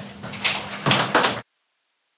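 Two short clusters of noisy scraping or bumping, about half a second and about a second in, then the sound cuts off abruptly to dead silence.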